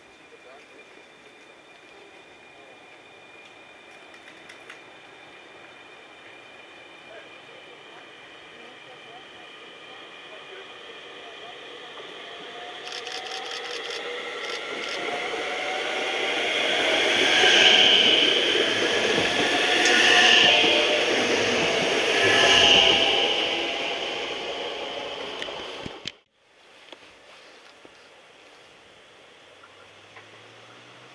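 CAF Civity SNG electric multiple unit approaching and running into the platform, growing steadily louder to three loud peaks about two to three seconds apart, each with a high-pitched squeal from the wheels or brakes. The sound cuts off suddenly about four seconds before the end, leaving a quieter steady background.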